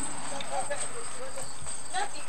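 Steady hiss and a thin high whine from a worn home-video tape playing back with no clear picture. A faint high voice comes through the noise about half a second in.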